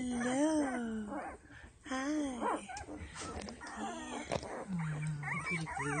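Ten-day-old Doberman puppies whimpering: a few drawn-out whines that rise and fall in pitch, one at the start, another about two seconds in, and a lower, steadier one near the end.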